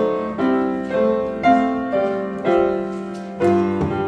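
Upright piano playing a hymn tune in full chords, about two chords struck a second.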